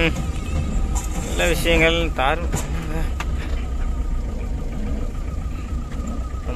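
Vehicle cabin noise while driving: a continuous low engine and road rumble with a faint steady high tone, and a voice singing or speaking over it for about a second near the middle.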